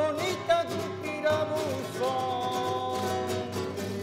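Flamenco singing, a male voice winding through an ornamented melismatic line and then holding one long note in the second half, accompanied by a Spanish guitar.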